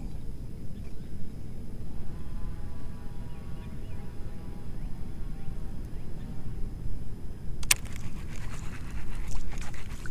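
Steady low wind-and-water rumble around a small fishing boat, with a faint, drawn-out distant call about two seconds in. Near the end a sharp click, then a patter of smaller clicks and rattles from the rod and reel as a striper strikes the flutter spoon and the hook is set.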